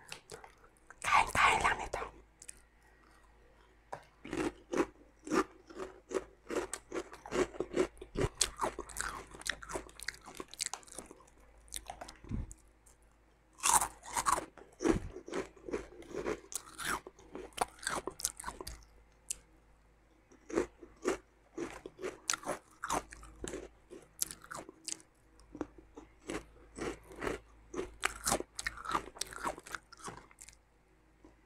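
Crunching and chewing of Mang Juan chicharron snack: crisp pieces bitten and chewed in many sharp, irregular crackles, with short pauses between mouthfuls.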